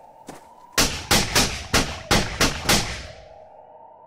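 A rapid series of about eight gunshots, roughly three a second, each loud and sharp with a short ringing tail, preceded by a few faint clicks.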